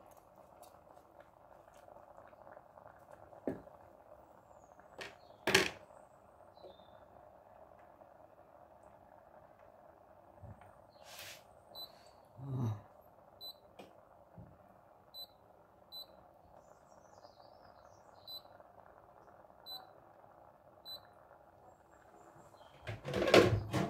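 Short high beeps, about ten of them, roughly a second apart through the second half, over a steady faint hiss in a kitchen. A couple of sharp knocks come earlier, the loudest just after five seconds in.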